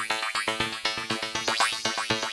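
Waldorf Microwave XTK wavetable synthesizer playing a held chord as a rapid, pulsing run of notes, several a second, with bright sweeps rising in its tone.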